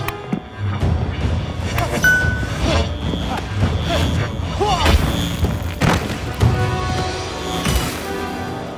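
Dramatic film-score music with deep, heavy low end, a few sharp percussive hits and gliding, swooping tones.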